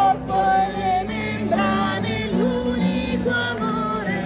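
A woman singing into a hand-held microphone played through a small portable speaker, with an acoustic guitar strummed as accompaniment.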